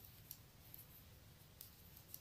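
Near silence, broken by a few faint, brief clicks of metal knitting needles as stitches are purled.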